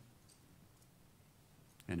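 Near silence: quiet room tone in a pause, with a couple of faint clicks early on, then a man's voice starting just before the end.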